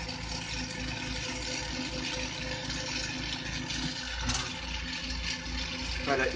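Two oxygen concentrators running steadily, a low hum with a fast pulse and a steady tone, under the hiss of an oxygen-fed glassworking bench torch flame. A brief click about four seconds in.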